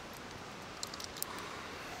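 Faint steady background hiss, with a few light, high clicks about a second in.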